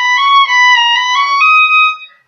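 Solo violin bowing a slow, high phrase of single held notes that step up and down by small steps, climbing to a higher note near the end before stopping.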